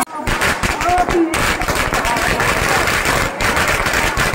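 Firecrackers going off on the ground in a fast, dense crackle of small bangs, with people's voices over it.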